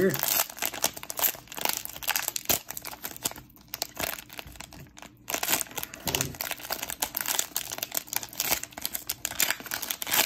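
Plastic wrapper of a Panini Prizm football hanger pack being torn open and crinkled by hand: a dense run of sharp crackles and rustles with a couple of brief lulls.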